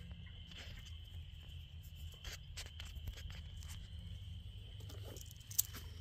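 Faint scattered clicks and light rustling from plastic maple sap tubing and a check-valve spile being handled, with one sharper click about five and a half seconds in, over a steady low hum.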